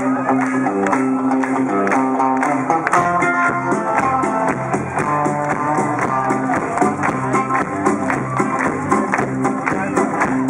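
Live band playing an instrumental passage with electric guitars, keyboard and drums at a steady beat, recorded from among the crowd.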